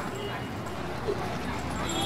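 Steady outdoor street background noise with faint voices of people around.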